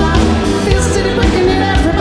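Rock band music with singing over electric guitars, bass and drums, a steady beat with cymbals.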